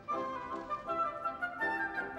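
Chamber orchestra playing, with woodwinds carrying the tune in quickly changing notes.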